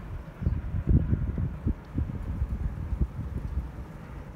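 Wind buffeting the phone's microphone in uneven low gusts, loudest about a second in.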